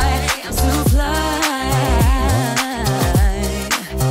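Background R&B-style pop song with a sung vocal line over bass and drums.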